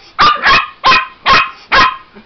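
Small puppy barking five times in quick succession, about two barks a second, at a robotic toy pig it dislikes.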